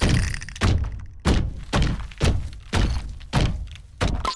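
Cartoon sound effect of loud pounding: heavy thuds repeating about twice a second, each with a short ringing decay.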